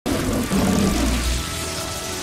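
Movie sound effect of crackling electric lightning shot from a figure's hands, over a deep rumble that swells and fades in the first second and a half.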